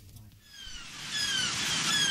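Fading-in intro of a recorded song: gulls calling in short falling cries over a swelling rush like surf.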